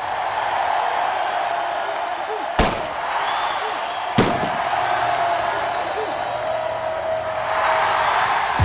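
Two pistol shots about a second and a half apart, the first a little over two and a half seconds in, over a stadium crowd cheering steadily.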